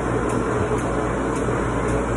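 Steady mechanical drone with a low hum and a faint steady tone, unchanging throughout, with faint light ticks about twice a second.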